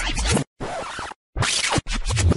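Record-scratch sound effects over short, chopped clips of a montage, the sound cutting off abruptly into brief silences about halfway through and again near the end.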